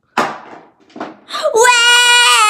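A few short, sharp noisy bursts, then about one and a half seconds in a child starts to wail loudly on a high, drawn-out note.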